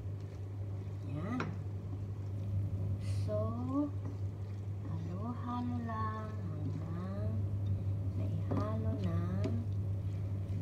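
An indistinct voice in short phrases over a steady low hum.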